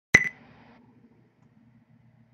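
A single short electronic beep with a sharp click at its onset, just after the start, fading out within about half a second; a faint low hum follows.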